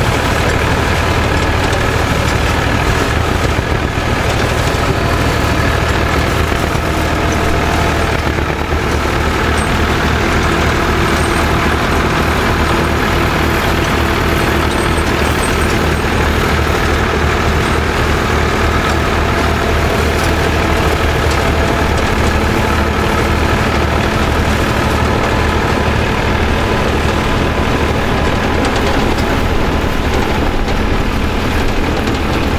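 Tractor engines running steadily under load as they pull a potato harvester slowly along the rows.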